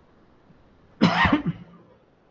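A man coughs once, about a second in; the cough is sudden and loud and is over in about half a second.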